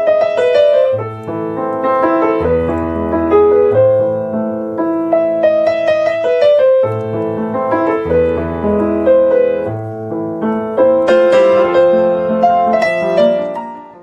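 Piano music: a slow melody of held notes over low bass notes, fading out near the end.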